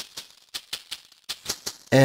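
A maraca loop played solo: short, crisp maraca hits in a tight, even rhythm, about four a second. The loop is built from individually cut maraca hits, each placed and panned separately, which makes it unnaturally tight.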